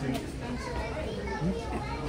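Several people's voices talking at once, with some high-pitched voices like children's among them, none of them clear enough to make out words.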